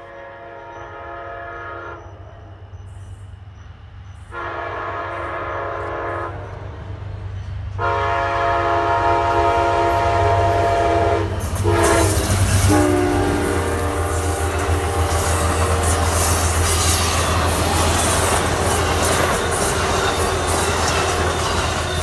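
Horn of an Amtrak P42DC diesel locomotive sounding the grade-crossing signal, long, long, short, long, as the train approaches. The locomotives and passenger cars then pass close by in a loud steady rush, with rapid wheel clicks over the rail joints.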